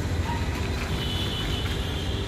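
Outdoor city background noise: a steady low rumble, like distant traffic, with a faint high tone coming in about halfway through.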